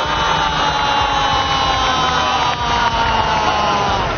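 A football TV commentator's long held shout: one unbroken cry that slowly falls in pitch, heard over the match broadcast's background noise.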